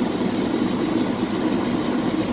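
Steady road and engine rumble heard inside the cabin of a moving car.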